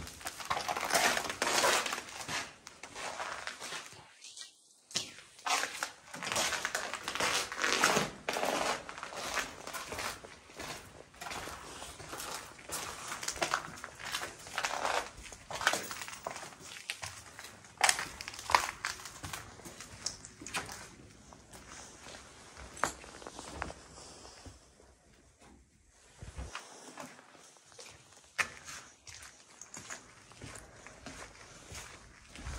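Footsteps crunching over rubble, grit and broken plaster on a concrete floor, an irregular run of steps.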